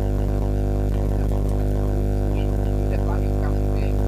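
Loud, steady buzzing hum with a stack of overtones, unchanging throughout, typical of electrical mains hum in a sound system. It drowns out the amplified voice at the microphone.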